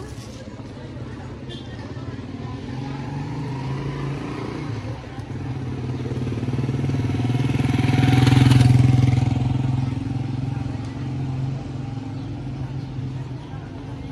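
Small motorcycle engine running at low speed, growing louder as it passes close by about eight seconds in, then fading away.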